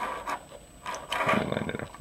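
Handling noise: rubbing and rustling as the circuit board's cable is grabbed and the board is shifted on carpet, louder in the second half.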